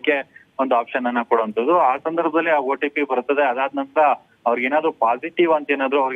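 Speech only: a news reporter talking almost without pause, the voice cut off above the middle treble like a phone line.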